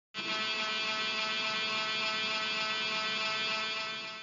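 Dremel Micro rotary tool's small high-speed motor running steadily, a constant whine with many overtones.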